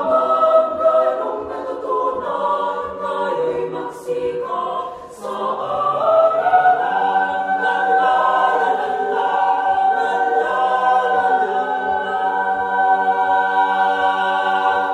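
Mixed youth choir singing a cappella in several parts. About six seconds in, the voices settle onto one long held chord that closes the song.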